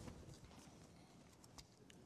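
Near silence: room tone with a few faint taps and clicks from hands handling a Bible at a wooden lectern.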